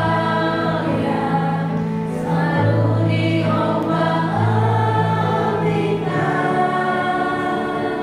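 A small group of mixed voices, mostly women, singing an Indonesian gospel hymn together, over a keyboard holding steady bass notes that change every second or two.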